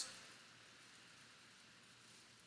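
Near silence: faint, steady room tone hiss.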